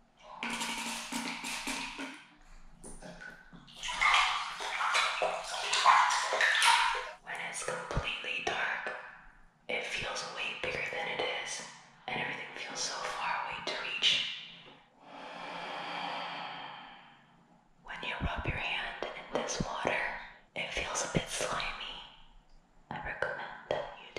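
A woman whispering in short phrases with brief pauses between them.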